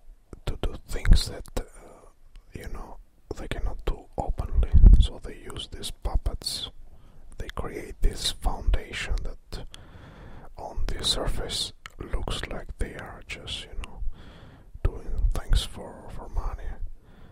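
Whispered speech in short phrases broken by brief pauses.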